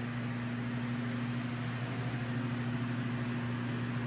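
A steady low hum under an even hiss, from a walk-in flower cooler's refrigeration fans running.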